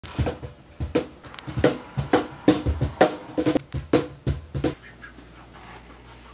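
Cajon played in a quick rhythmic beat of deep bass strokes and sharper slaps, cutting off abruptly near the end.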